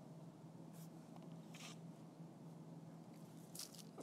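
Near silence: room tone with a faint steady hum and a few soft, brief noises.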